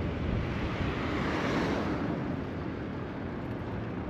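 Street traffic noise heard from a moving bicycle: a steady rush, swelling a little as an oncoming van passes about a second and a half in.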